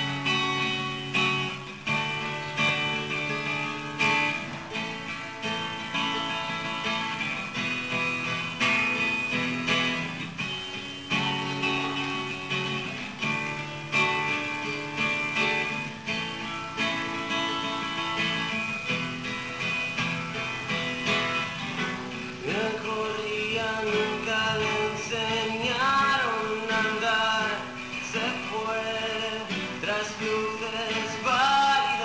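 Two acoustic guitars playing a plucked, picked intro. A male voice comes in singing about two-thirds of the way through.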